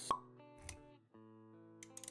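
Intro jingle for an animated logo: a sharp pop sound effect right at the start, a softer low thump just after, then music with held notes.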